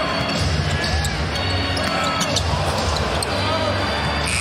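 Basketball dribbled and bouncing on a hardwood court, with sharp short knocks scattered through and steady arena crowd noise underneath.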